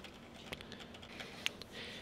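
A few faint clicks at the computer, the clearest about half a second in and about a second and a half in, over quiet room tone, as the forecast map is changed.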